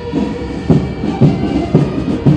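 Military march music: a drum beat about twice a second under held pipe notes.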